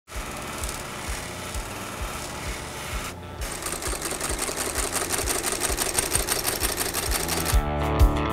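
A spinning buffing wheel runs against boot leather for about three seconds. After a cut, a heavy leather-stitching machine sews a boot sole piece at speed, a rapid, even run of stitches. A steady drum beat runs underneath, and guitar music comes in near the end.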